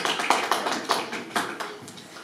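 A small audience clapping: irregular, separate hand claps that thin out toward the end.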